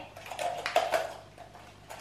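Paper and plastic being handled: a few short crackles and clicks in the first second as small items are shaken out of a plastic toy container, quieter rustling after, and a sharp click near the end.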